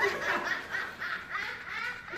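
High-pitched laughter in quick, repeated peals.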